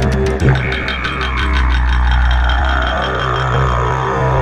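Didgeridoo-led dance music: a didgeridoo drone over a deep steady bass, with fast percussion in the first half and a long downward sweep starting about a second in.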